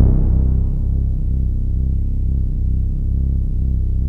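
Deep, Moog-style synth bass built in FL Studio's Sytrus, playing alone: a low note that sustains and fades slowly, with no drums.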